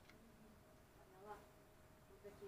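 Near silence with a faint, steady hum underneath, and a brief faint voice-like sound about a second in.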